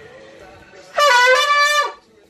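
A gold trumpet-shaped horn blown in one loud blast lasting about a second, starting about a second in, its pitch dipping slightly as it begins.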